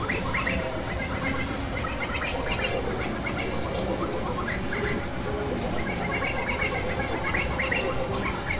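Experimental synthesizer sound from a Novation Supernova II and Korg microKORG XL: a dense, steady noisy drone with clusters of short, quick high blips, and a thin high whistle-like tone that comes in briefly near the start and again about six seconds in.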